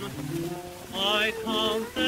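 Orchestra playing an instrumental passage between the tenor's sung lines on a 1927 shellac 78 rpm record. Low held notes give way, about a second in, to a melody with vibrato, under the record's surface hiss and crackle.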